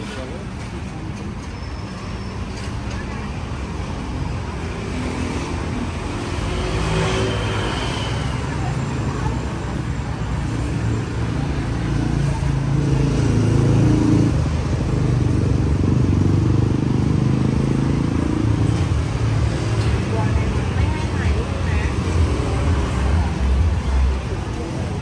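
Street traffic of cars and motorbikes passing on a busy road, with a steady engine rumble. A vehicle's engine grows louder about halfway through and stays loudest for several seconds.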